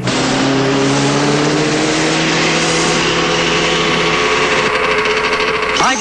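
Cartoon vehicle engine sound effect running loudly and steadily over a dense rushing noise, its pitch rising slightly over the first few seconds.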